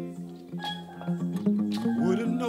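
Live band music in a gap between vocal lines: an acoustic guitar and sustained bass notes, with a couple of sharp percussion strokes.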